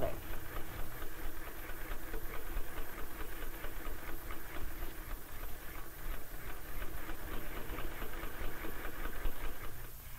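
Sewing machine running steadily, stitching a seam that joins a skirt to a bodice.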